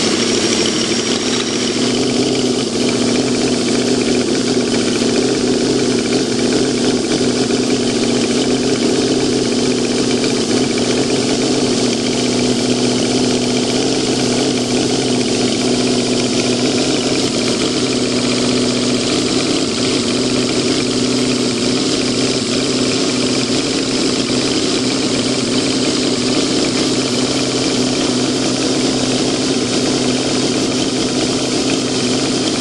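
Miniature scale-model Ford 302 V8 engine running steadily at idle just after being started.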